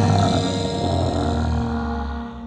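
Deep, rumbling monster roar sound effect for a giant beast, fading away toward the end, over steady background music.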